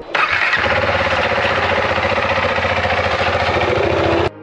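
KTM Duke single-cylinder motorcycle engine with an aftermarket slip-on exhaust starting up: a sudden burst as it fires, catching within about half a second and running on with a steady, even pulse.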